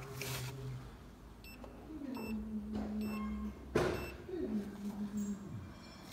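Handling of a multimeter test lead being pushed into a glow plug wiring connector: scattered light clicks and rustles. A low steady hum is held twice for a second or so, about two seconds in and again near the end.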